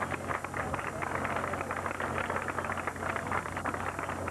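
Crowd of spectators applauding: many hands clapping steadily.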